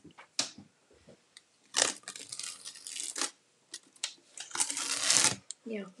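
Blue painter's tape being peeled off a painted wooden box in two long ripping pulls, the second one shorter, uncovering the freshly painted stripe.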